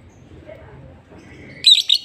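Caged lovebird giving one short, loud, high-pitched chirp of two or three quick notes near the end.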